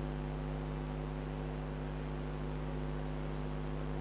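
Steady electrical mains hum with a low, even hiss underneath; nothing else happens.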